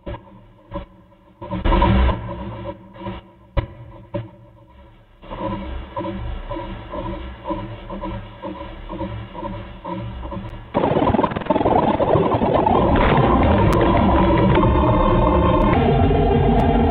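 Glitchy synthesized sound from the Fragment spectral synthesizer, which turns a live-coded image into audio. It starts as choppy stuttering bursts with sharp clicks, settles about five seconds in into a steady layered drone, then jumps suddenly to a louder, dense noisy wall about eleven seconds in.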